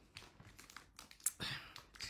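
Faint crinkling and light clicks of packaging being handled, with a sharper click a little after a second in.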